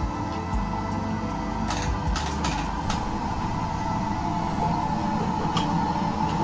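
Background music over the working of a hand-operated wooden lever press for millet noodles, with a handful of sharp wooden knocks about two to three seconds in and one more near the end.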